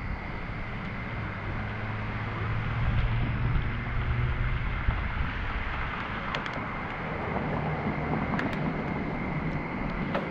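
Wind rushing over the microphone of a camera riding on a moving bicycle, mixed with road and traffic noise that swells in the middle. A few light clicks come in the second half.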